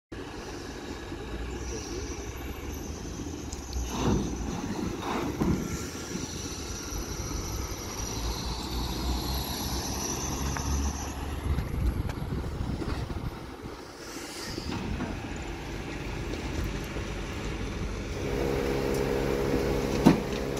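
Vehicle engines and traffic on a street: a steady low engine rumble through the first half, with a van driving past around the middle. In the last couple of seconds a steady pitched engine hum comes in.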